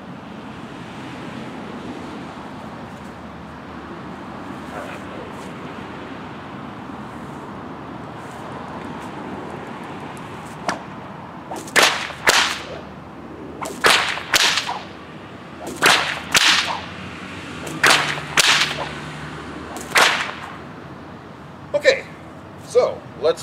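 8-foot 12-plait cowhide bullwhip cracking repeatedly in a fast figure 8, a cattleman crack combined with an underhand crack. After about ten seconds of steady background hum, sharp cracks start near the middle, coming in close pairs about every two seconds.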